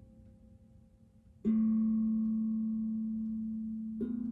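Steel tongue drum struck with a mallet: a single low note sounds about one and a half seconds in and rings on, fading slowly, over the faint tail of an earlier note. A second note is struck right at the end.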